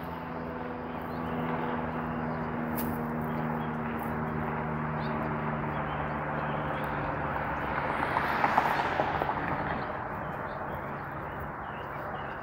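Street traffic: a steady, low engine hum that fades out after about eight seconds, and a car passing by a little past the middle.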